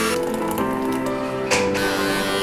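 Background music with sustained notes, and a brief rush of noise about one and a half seconds in.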